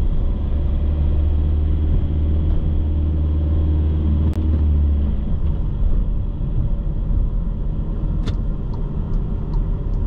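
Car driving on a city street: steady road and engine rumble, heavy in the low end, easing off about halfway through. Near the end a regular run of light ticks begins, about three a second.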